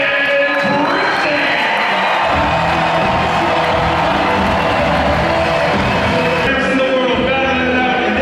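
Music over a large arena's PA system with an amplified announcer's voice; about two seconds in, music with a heavy bass comes in and runs under the voice, with some crowd cheering in the hall.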